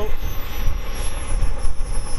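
Small 80-size model jet turbine in an RC car whining at low throttle just after the throttle is cut, its high-pitched whine sliding slowly down in pitch, under a low rumble.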